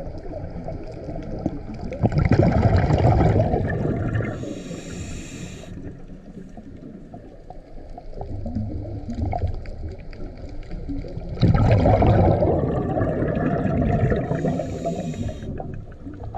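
Scuba diver breathing through a regulator underwater, two breaths: each a loud gush of exhaled bubbles lasting two to three seconds, followed by a short hiss of inhaled air through the regulator.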